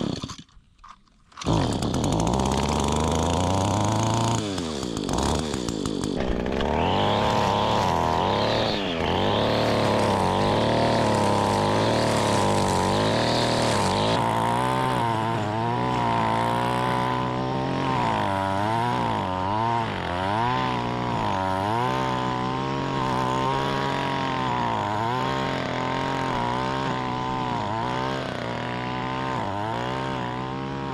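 Gas-powered string trimmer being pull-started, its engine catching about a second and a half in, then revving up and down over and over as it cuts weeds.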